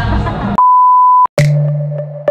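A single steady, pure beep tone, about two-thirds of a second long, cuts in over busy music and stops abruptly. After a brief gap, an electronic music track with a low bass note and sharp percussive hits starts.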